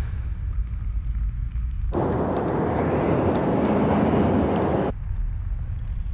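Deep steady rumble. A burst of rushing noise starts abruptly about two seconds in and cuts off sharply just before five seconds.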